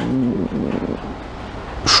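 A car passing, heard as a steady wash of road and engine noise that eases off toward the end, between a man's spoken phrases.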